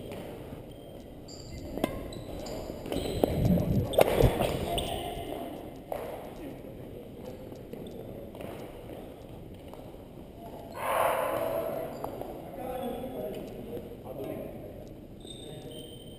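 Badminton rally in a gym: sharp racquet hits on the shuttlecock about every two seconds, with shoes moving on the hardwood floor, echoing in the hall. A player's voice is heard briefly about eleven seconds in.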